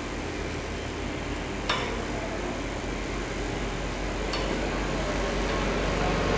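TIG welding arc burning steadily, a soft even hiss over a low electrical hum, with two brief sharp clicks, about two and four seconds in.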